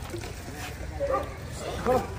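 Street dogs barking and yipping in short bursts around the food being poured out, the loudest bark just before the end.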